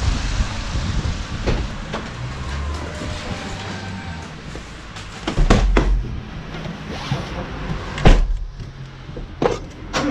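A small car's door being opened and then shut from inside, with clicks and knocks and the loudest slam about eight seconds in, as the driver gets in.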